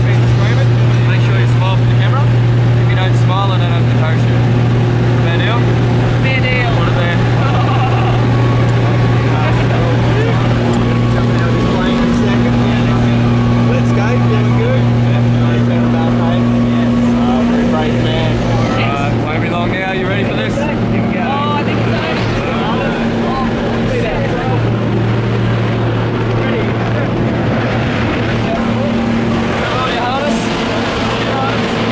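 Aircraft engine droning steadily, heard from inside the cabin, with a constant low hum that eases off slightly about two-thirds of the way through.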